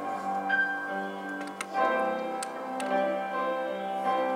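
Soft piano music, with held chords changing every second or two and a few light clicks over it.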